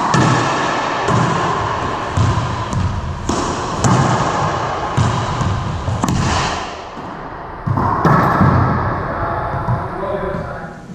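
Racquetball rally: the ball cracking off racquets and court walls about once a second, each hit ringing with the echo of the enclosed court.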